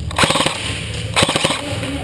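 Two short bursts of rapid-fire shots from a toy gun in a skirmish game, each about a quarter-second long and about a second apart, with quick sharp cracks.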